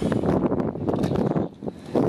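Wind buffeting and clothing and harness straps rubbing against a chest-mounted action camera's microphone, a dense crackling rustle that briefly drops away about one and a half seconds in.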